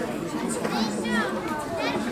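Children's high-pitched voices calling out in short rising-and-falling phrases, over a lower murmur of voices.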